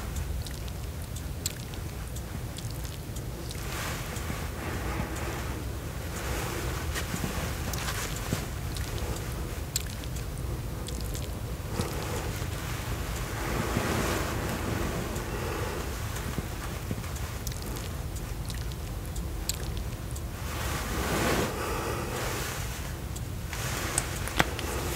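Sponge-tipped makeup applicator wand stroked against the microphone: soft swishing sweeps every few seconds over a steady low rumble, with a few light ticks.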